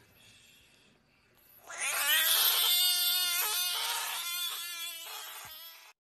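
A Budgett's frog giving its defensive scream: one long, loud, cat-like wail that starts about two seconds in, is broken briefly a few times and cuts off just before the end. A faint rustle comes before it.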